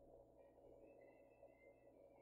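Near silence: room tone, with a very faint, high, thin warbling tone that comes in about half a second in and fades after a second or so.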